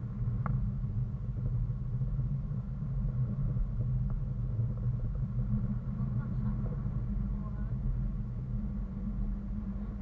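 Wind buffeting an action camera's microphone in flight, a steady low rumble, with faint voices about six seconds in.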